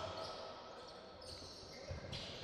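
Faint sports-hall ambience of a live basketball game: a basketball bouncing on the wooden floor, with a few soft low knocks over a quiet background hum.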